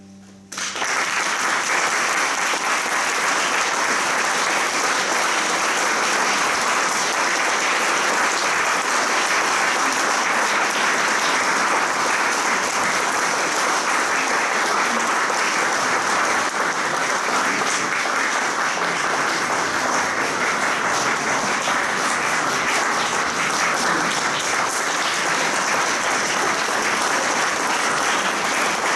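Concert audience applauding, starting about half a second in and going on steadily as the piano trio's performance ends.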